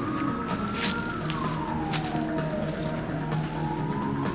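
A siren wailing, its pitch rising slowly, falling over about a second and a half, then rising again, over steady low tones.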